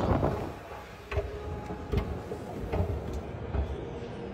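Background ambience of a large indoor hall: a steady low rumble and hum with a few soft knocks.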